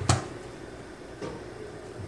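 Quiet room tone with a faint single tick just over a second in.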